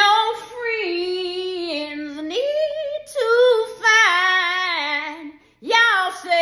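A woman singing unaccompanied, holding long drawn-out notes with vibrato. Her voice breaks off briefly just before the end, then comes back in.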